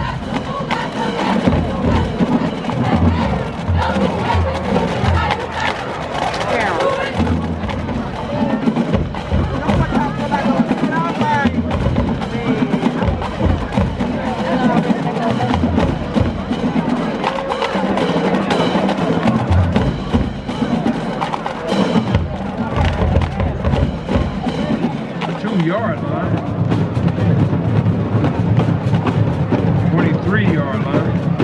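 High school marching band drumline playing a percussion cadence: snare drums with sharp stick and rim clicks over bass drums.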